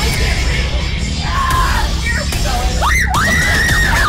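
A woman screaming in fright, one long high scream that rises and holds from about three seconds in, with shorter shrieks before it, over loud background music.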